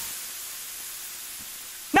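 Burger patties sizzling on a grill grate: a steady hiss that fades slightly, cut off at the very end as rap vocals come in.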